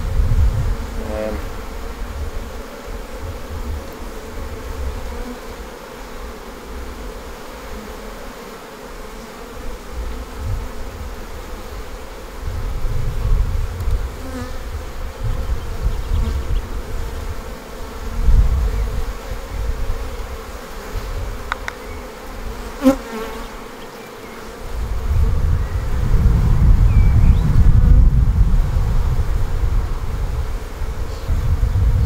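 Honey bees from an opened hive buzzing steadily. A low rumble swells and fades at times, strongest near the end, and there is a single sharp click a little past the middle.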